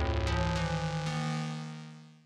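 Sampled Casio CZ synthesizer effects patch from the CZ Alpha Kontakt library, played from a keyboard: several pitched notes struck in quick succession over a deep bass, ringing on together and fading away near the end.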